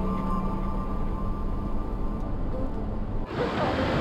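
Background music with long held notes over the road noise of a minibus driving on a mountain road. About three seconds in, the sound cuts to a rushing river.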